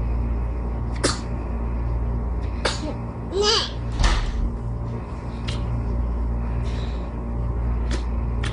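A young child's brief high vocal sound, rising and falling, about three and a half seconds in, over a steady low hum with a few sharp clicks.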